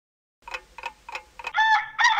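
Four sharp clock-like ticks, about three a second, then a rooster begins to crow near the end.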